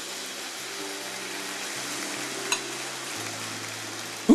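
Congregation applauding steadily, with soft music of held notes underneath.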